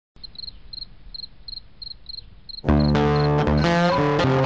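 A cricket chirping steadily, about three chirps a second. A little past halfway in, guitar music starts and becomes the loudest sound, with the chirps still faintly under it.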